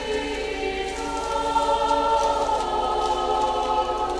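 Choir singing a slow sacred melody in long held notes, the chords changing every second or two.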